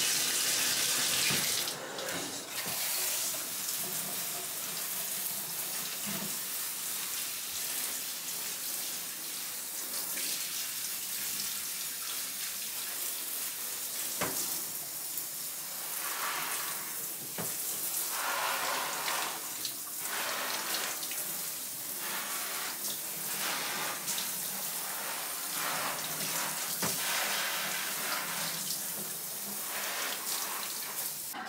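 Shower water spraying onto potted houseplants and into a bathtub, hosing the dust off their leaves: a continuous hiss of running water. It is loudest in the first two seconds, then steady, changing in tone now and then.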